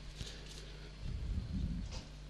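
Quiet background in a pause between announcer calls: a low steady hum, with a faint, indistinct sound in the second half.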